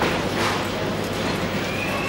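Hoofbeats of a loping horse on the soft sand footing of an indoor arena, over a steady low hum, with a faint brief high tone near the end.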